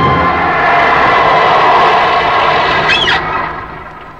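A car driving up and braking, with a short wavering squeal about three seconds in. The sound then fades quickly.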